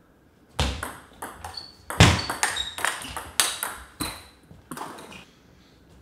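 Table tennis rally: the ball clicks off the rubber-faced paddles and bounces on the table in quick, irregular succession, some bounces ringing with a short high ping. It starts with the serve about half a second in.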